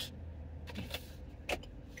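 Steady low road and engine rumble of a moving car, heard from inside the cabin, with a short click about a second and a half in.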